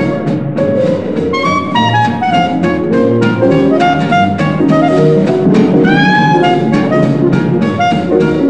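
Instrumental break of a 1949 German swing dance-band recording: the band plays a jazzy melody over a steady drum beat, with one long note bending in pitch about six seconds in.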